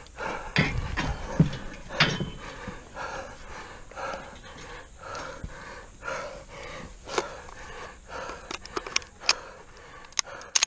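Hard, rapid panting of a man out of breath from running the course, about two breaths a second. A few knocks come in the first two seconds and several sharp clicks near the end.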